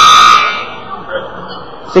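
Gym scoreboard buzzer sounding one loud, steady electronic tone that cuts off about half a second in, leaving low background noise in the gym.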